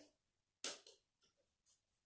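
Near silence, broken once about half a second in by a brief rustle of ring-sling fabric being pulled up.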